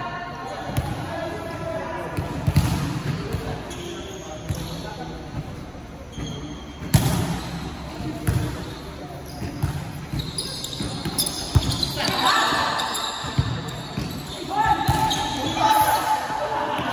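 Volleyball rally in a gym: sharp slaps of the ball being struck, a few seconds apart, with players shouting to each other, the shouts growing in the last few seconds.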